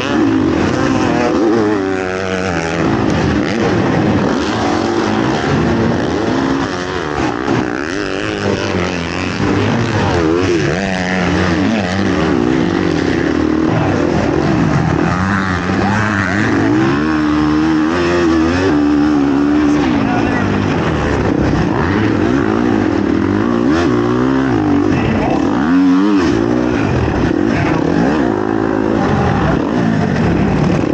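KTM dirt bike engine racing on an arenacross track, its pitch rising and falling over and over with throttle and gear changes, with other riders' motocross bikes running close by.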